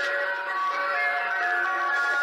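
An ice cream van's electronic chime playing a tune: a string of bright, clear single notes stepping up and down in a steady melody.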